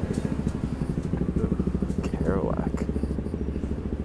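A large truck engine idling close by, a steady, rapid low throb. A voice is heard briefly about two seconds in.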